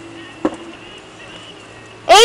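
A single sharp knock about half a second in: a plastic wiffleball striking something hard during a pitch.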